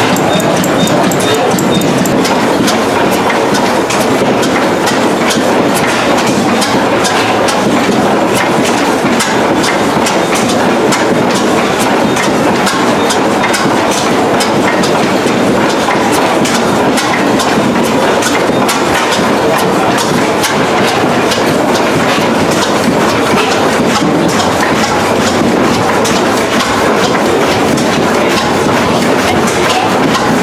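Vintage stationary gas engines running, a steady loud mechanical clatter of rapid clicks and knocks from their valve gear and linkages.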